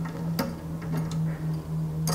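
Faint light metal clicks as the threaded adjusting stem of a pressure reducing valve is turned by hand with a brass pin used as a key, over a steady low hum.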